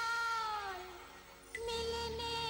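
Wordless female singing in the background music: a long held note that slides down and fades away about halfway through. A new held note comes in with a faint click near the end.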